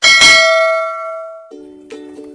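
A bell-like ding sound effect, struck once and ringing with several clear tones that fade out over about a second and a half, as in a notification-bell click. About 1.5 s in, background music with a guitar starts.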